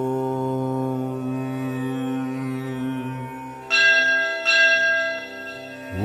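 Devotional intro music: a long held droning tone fades away, then a bell is struck twice, a little under a second apart, each strike ringing on and dying away.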